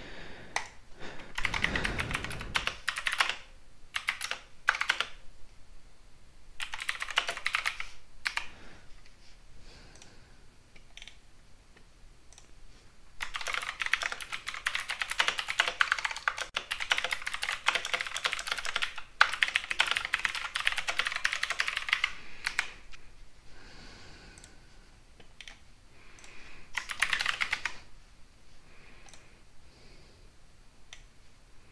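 Typing on a computer keyboard in several bursts of rapid key clicks, the longest running about nine seconds through the middle, with a low thump about two seconds in.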